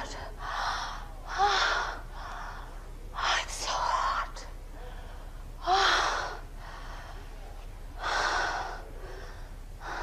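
A woman's breathy gasps and sighs, about six of them a second or two apart, a few carrying a short rising-and-falling voiced pitch.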